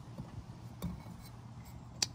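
Faint handling sounds with a few light clicks as fingers work a small seal up into its groove on the centre post of a metal fuel filter housing.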